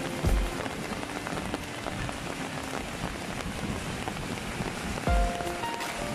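Steady rain falling on a wet paved street, a continuous even hiss. A few brief low thumps come near the start and again about five seconds in.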